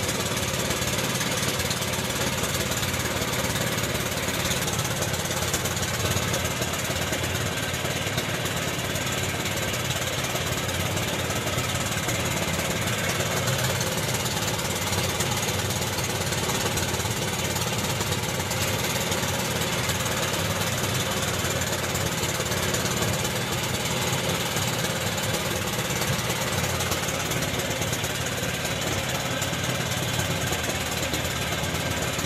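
A small fishing boat's engine running steadily at a constant speed, with a dense, even drone.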